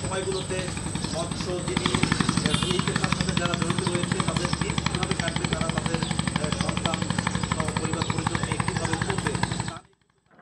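A boat's engine running with a fast, even beat, with people's voices in the background. The sound cuts off suddenly just before the end.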